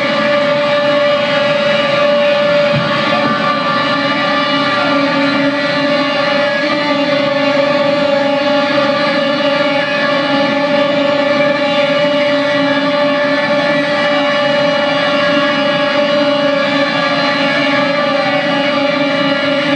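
Electric guitar feedback and amplifier drone: a loud, steady ringing tone held on without drums or singing.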